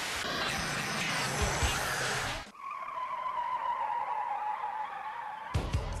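Produced outro sound effect: a loud rush of noise for about two and a half seconds that cuts off abruptly, then a quieter single tone that slowly falls in pitch and stops just before the outro voice.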